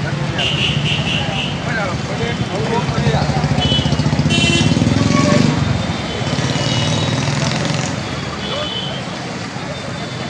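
Busy street noise: a crowd of people talking and moving, with motor vehicles and motorcycle engines running close by. A few short high beeps cut through, and there is one sharp click a little before the middle.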